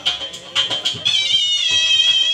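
Shehnai playing a high, nasal, wavering melody over dhol drum strokes. The reed line thins out briefly, then comes back strongly about a second in with a long note that slides in pitch.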